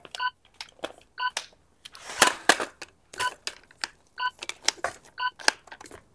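A short electronic timer beep about once a second, counting off the seconds, over sharp clicks and knocks from a carbon fiber tripod's flip-lock leg levers being opened and its legs dropped and raised; the loudest knock comes about two seconds in.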